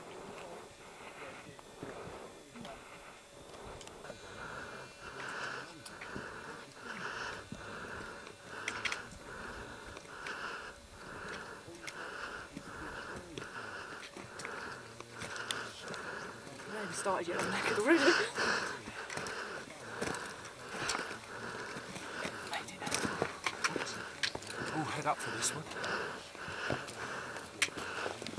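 A climber's heavy, rhythmic breathing on a steep rocky ascent, a breath a little faster than once a second, with scuffs of boots and trekking poles on rock. It grows louder briefly about two-thirds of the way in.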